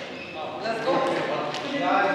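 Indistinct voices of several people talking in a large stone hall, echoing.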